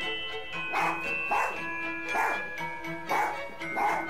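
A dachshund barking about five times in an irregular run, over music with steady held, ringing tones. It is barking at deer in the yard.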